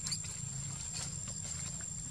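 Forest ambience: a steady high-pitched whine and a low rumble, with a brief high squeak just after the start and a few faint clicks.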